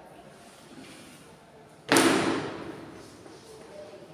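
A single loud bang about halfway through, dying away over about a second as it echoes in the room.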